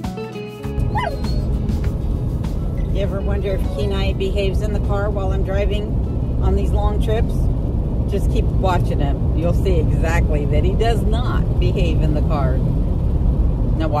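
A dog yipping and whining again and again inside a moving car, short rising-and-falling cries over a steady low road rumble. Music ends about a second in.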